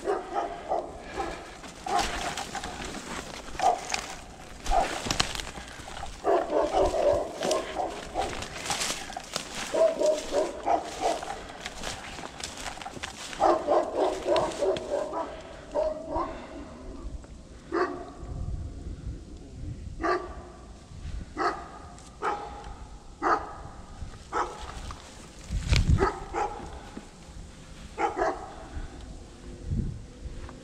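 Footsteps crunching through dry leaf litter and twigs, with a dog barking and whining at intervals.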